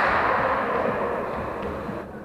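Echoing sports-hall noise from an indoor volleyball game: a wash of sound that slowly fades, with no distinct ball hits.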